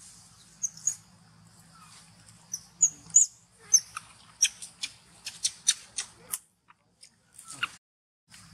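Macaque squeaks: a series of short, high-pitched calls, coming quickly one after another in the middle, with one more near the end, over a faint low hum.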